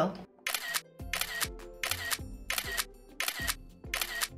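Camera shutter clicks fired in quick succession, roughly two a second, over background music with a low bass.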